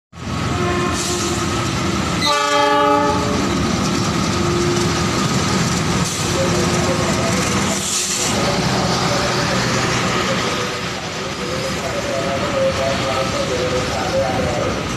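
Diesel-hauled passenger train running through a station: the locomotive's horn sounds once for about a second, over steady rumble and wheel clatter as the coaches pass close by.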